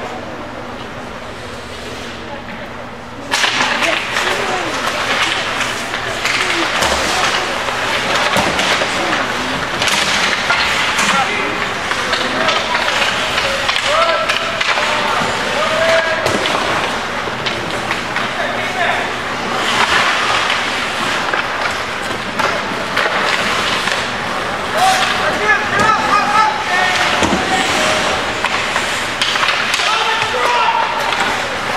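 Ice hockey being played in an echoing indoor rink: skates scraping the ice, with sticks and puck knocking, under players' and spectators' shouts. The noise jumps up about three seconds in, as play restarts after a faceoff.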